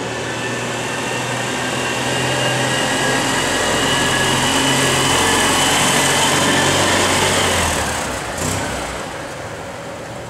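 Citroën 2CV van's air-cooled flat-twin engine running as the van drives slowly past and away. It grows loudest about six to seven seconds in, then fades, with a short knock shortly after.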